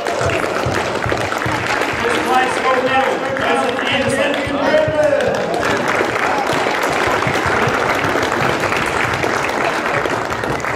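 Audience clapping, with indistinct voices talking over it; the clapping is densest in the second half.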